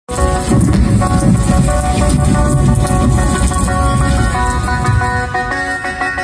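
Rock band playing live through a stage PA, with electric guitars over a heavy low end. About five seconds in, the low end drops away, leaving ringing electric guitar notes.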